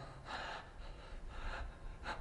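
A man breathing audibly between spoken lines: two soft breaths about a second apart.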